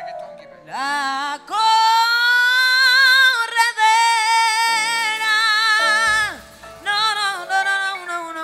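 A woman singing live into a microphone, holding one long note with vibrato for several seconds, then starting a shorter phrase near the end, over a band's quieter accompaniment.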